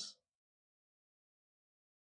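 Near silence: a dead-quiet gap after a voice trails off in the first instant.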